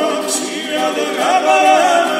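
Georgian folk vocal ensemble singing a capella in sustained close harmony, held chords with a slight waver; the voices shift and swell in the second half.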